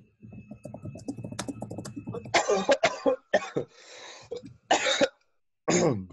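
A person clearing their throat, then a run of about five coughs starting about two seconds in, with a drawn breath between them. The coughing comes from someone who is sick.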